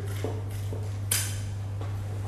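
Sharp spines being cut off a sea bass: a few short clicks or snips, the loudest about a second in, over a steady low electrical hum.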